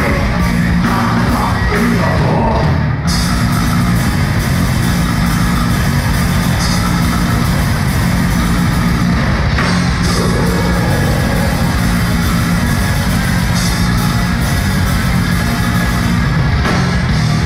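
A heavy metal band playing live and loud, with distorted guitars and drums in a steady, dense wall of sound heavy in the bass. It is recorded through a phone's built-in microphone in a club hall.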